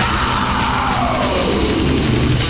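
Heavy metal played loud on distorted electric guitars, bass and drums, with a long sliding tone that falls steadily in pitch through the two seconds.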